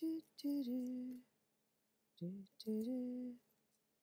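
A woman humming a tune to herself in a few short phrases of held notes with brief pauses between them.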